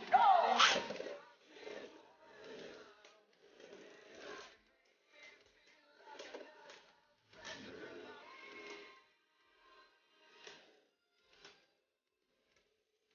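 A short sound effect with sweeping tones about a second long at the start, then faint, scattered scrapes and clacks from two Beyblade spinning tops running in a plastic stadium.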